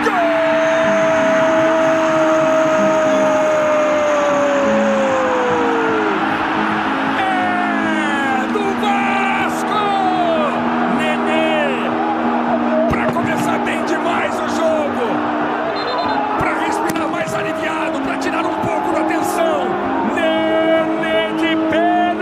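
Background music with a long drawn-out goal cry over it. The cry is held for about six seconds and slides down in pitch.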